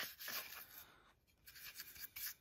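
Paintbrush bristles scrubbing the inside of a car's throttle body, wet with a petrol and acetone solvent that loosens oily grime: faint scratchy strokes with a short pause about a second in.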